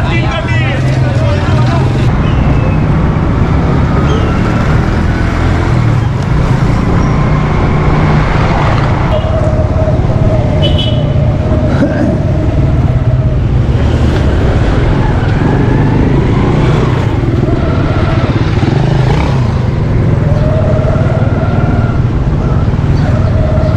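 Motorcycle engine running steadily as the rider moves along a street, with surrounding street traffic.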